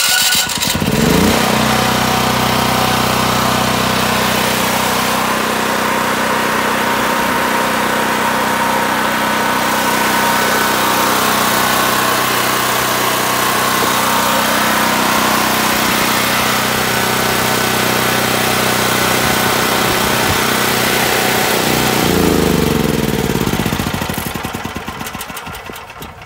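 Predator 9000 portable generator's single-cylinder gasoline engine catching on its electric starter, which is powered by a Milwaukee M18 power-tool battery in place of its own starter battery, and rising to a steady run. It runs evenly for about twenty seconds, then falls in pitch and dies away near the end as it is shut off.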